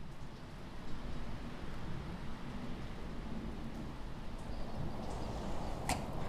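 Steady outdoor ambience, a low rumble with a soft hiss, with one sharp scrape near the end.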